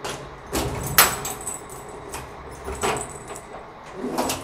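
A bunch of keys jangling as a key is worked in the lock of a stainless-steel security door, with several sharp metallic clicks, the loudest about a second in.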